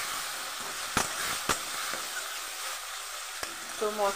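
Spice paste of ground cumin, garlic and ginger sizzling in hot oil in a metal kadai as a spatula stirs it, with two sharp clicks of the spatula on the pan about one and one-and-a-half seconds in.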